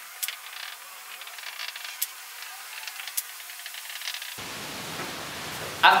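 Whiteboard marker scratching and faintly squeaking as a graph is drawn, over a steady hiss, with a few light clicks.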